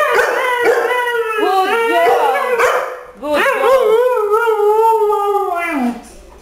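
A Siberian husky and a Labrador retriever howl together in two long, wavering phrases, sliding up and down in pitch. There is a short break about halfway through.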